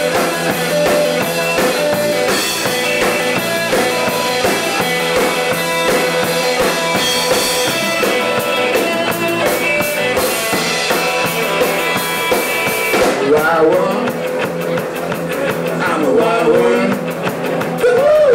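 Live rock band playing an instrumental stretch between sung lines, with drum kit and electric guitar. The cymbals ease off about two-thirds of the way through.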